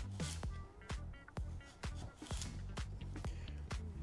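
Chef's knife slicing a carrot into thin planks, the blade knocking on a bamboo cutting board in a string of irregular sharp knocks, over quiet background music.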